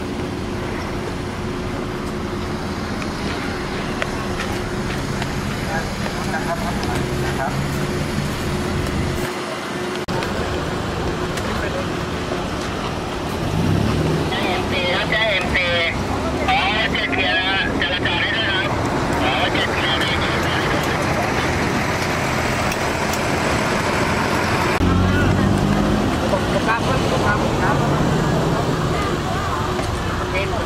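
Road traffic: motor vehicle engines running and passing close by, a steady rumble whose pitch shifts, rising in a rev about two-thirds of the way through.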